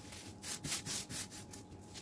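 Thin plastic sheet crinkling and rustling as it is rubbed and smoothed flat by hand, in a quick run of short crinkles, about four a second.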